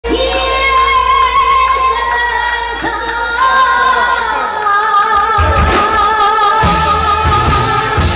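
A woman singing long held, wavering notes into a microphone over a live band of keyboard, bass and drums, all through stage loudspeakers. Bass and drum beats come in strongly about five seconds in.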